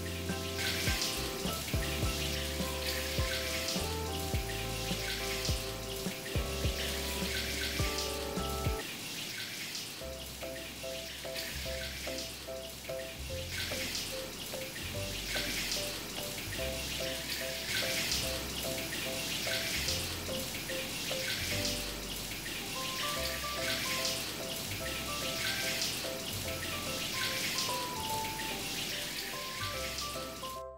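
Shower water running steadily while soap is rinsed off the body, mixed with light background music: a simple melody over a repeating bass line.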